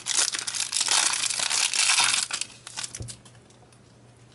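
Foil booster-pack wrapper crinkling in the hands as the pack is opened, steady for about two seconds, then dying away to a few faint handling clicks.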